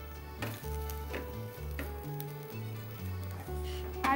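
Sliced onions sizzling as they fry in a kadai and are stirred with a wooden spatula, with a few sharp clicks. Background music with a stepping bass line plays throughout.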